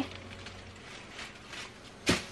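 Faint rustling of artificial silk flowers and leaves being handled and lifted out of the enclosure, over a low steady hum.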